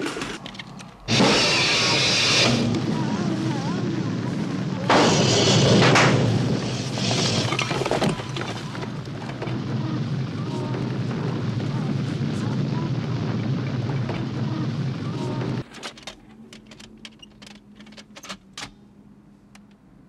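Movie action sound effects over score music: sudden loud crashing bursts about one, five and seven seconds in, over a dense sustained din that cuts off abruptly near the end, leaving faint scattered clicks and a low steady tone.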